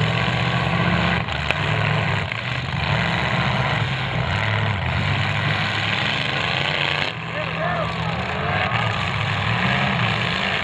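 Several demolition-derby cars' engines running hard and revving as the cars push and ram into each other. There is a sharp bang about a second and a half in.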